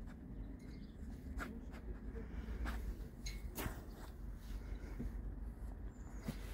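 English Cocker Spaniel sniffing and nosing through grass, its muzzle rustling and scraping the blades in a run of small, irregular scratchy crackles and clicks.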